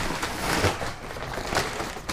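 Heavy brown paper sack rustling and crinkling as it is grabbed and pulled open, with a couple of sharper crackles.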